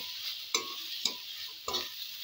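Vegetables sizzling in oil in a metal kadai while a metal spatula stirs them, knocking and scraping against the pan three times.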